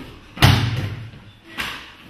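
A body thrown onto gym mats in a Pencak Silat takedown, landing with a loud slap about half a second in, then a smaller thud near the end.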